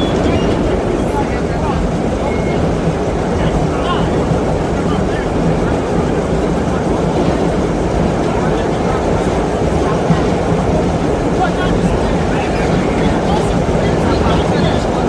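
Vintage BMT Standard subway car running through a tunnel at speed, heard from inside the car: a deep, steady running noise of wheels and motors, with indistinct passenger chatter over it.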